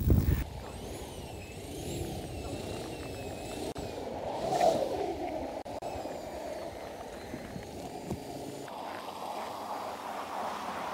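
Ford Ranger pickup driving hard on snow and ice, engine running with its note rising and falling as it slides, and a louder swell of engine and tyre noise about halfway through.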